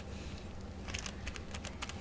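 Light clicks and taps as a rubber-band stamp is pressed and dabbed onto a plastic-cased ink pad, with a cluster of clicks about a second in and more near the end.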